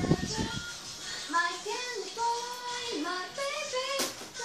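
A high voice, child-like, singing long held notes with gliding pitch, as music. In the first half second there are several thumps from scuffling on the floor.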